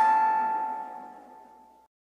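The last note of a chiming mallet-percussion tune, like a glockenspiel, ringing out and fading away, then cut off to silence near the end.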